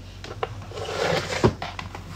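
Rummaging and handling things while packing a bag: a couple of light knocks and a brief rustle.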